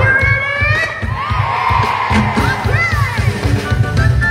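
A live band playing over loudspeakers with a pulsing bass beat, while a crowd cheers and shouts along.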